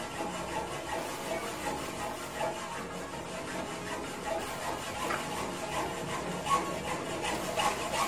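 Hands coating raw chicken pieces in breadcrumbs, a dry rubbing and scraping of crumbs against the bowl and plate, with sharper scrapes and clicks in the second half.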